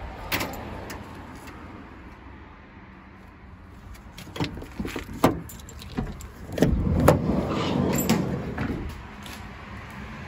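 Side sliding door of a Ford Transit Custom panel van being opened. Several clicks and knocks from the handle and latch, then a loud clunk about seven seconds in and a rolling rumble of about two seconds as the door runs back on its track.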